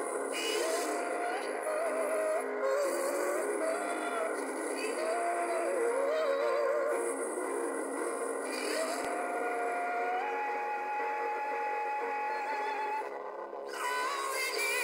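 A song with a solo voice singing a wavering, ornamented line over sustained accompaniment, then holding one long note that steps up once and breaks off about a second before the end.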